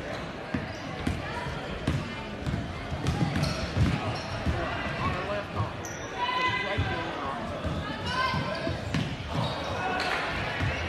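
Basketball being dribbled on a hardwood gym floor, a string of irregular thuds, with players, coaches and spectators calling out in the echoing gym.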